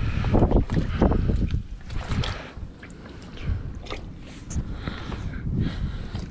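A bar pushing an iced-up trailer strap down into a bucket of salt water: irregular sloshing and splashing with scattered knocks, busiest in the first couple of seconds and then quieter. The strap is being soaked so the salt water melts the ice on it.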